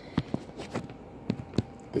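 A handful of light knocks and rubbing clicks from a hand handling a phone right at its microphone.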